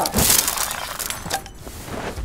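A loud crash of dishes and plates spilling and breaking, followed by scattered clattering that dies away over the next second or so.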